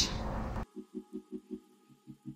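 Soft background music left on its own after the voice stops: a low note pulsing about four or five times a second, with a short hiss before it.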